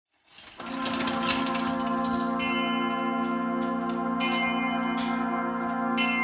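Wind band holding a long sustained chord that enters about half a second in, with a bell struck three times over it, about every two seconds.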